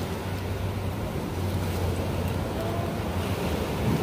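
Steady rush of ocean surf mixed with wind buffeting the microphone, a low rumble throughout, with faint crowd voices behind.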